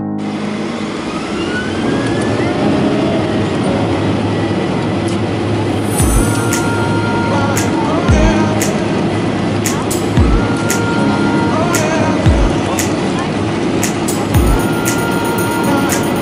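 Passenger aircraft cabin noise as the plane taxis: a steady engine hum and rush, with a dull low thump about every two seconds from about six seconds in.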